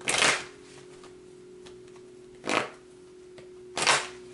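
A tarot deck being shuffled in the hands: three short bursts, one at the start, one about two and a half seconds in and one near the end, over a faint steady hum.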